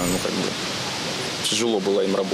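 A steady rushing background noise of an outdoor street, with a man's voice briefly at the start and again near the end.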